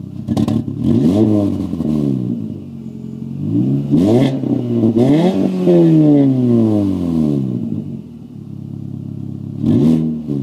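A 2004 Mini Cooper R50's four-cylinder engine, heard at the exhaust tip of a Flowmaster 40 series muffler, revved from idle in blips. There are a few quick blips in the first two seconds, then a run of blips and one longer rev that falls slowly back to idle about eight seconds in, and another blip at the end. Below 2,000 rpm it stutters, which the owner suspects is a fuel delivery problem.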